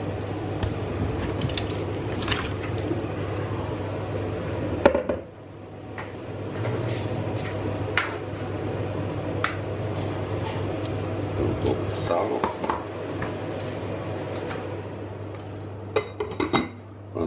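Water at a rolling boil bubbling steadily in a stainless steel pot, with scattered clinks and knocks of metal as sliced potatoes go in; one loud knock about five seconds in.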